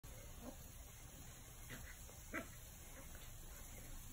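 A Welsh Terrier puppy gives a few short, separate barks; the loudest comes a little past halfway.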